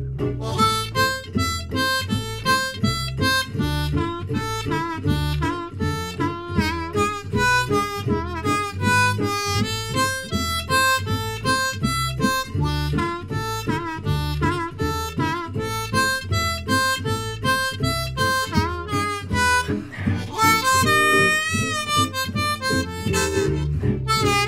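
G Hohner Marine Band diatonic harmonica in third position, in A minor, arpeggiating the triad of each chord in short, separate notes over a gypsy jazz guitar backing track keeping a steady beat. Near the end the harmonica holds a few longer, wavering notes.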